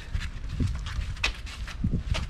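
Footsteps on a concrete driveway: a few irregular scuffs and taps from two people walking while carrying a heavy log.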